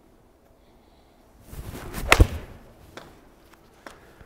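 A golf iron swung and struck off an artificial hitting mat: the swish of the club coming down, then a sharp double crack of the strike about two seconds in.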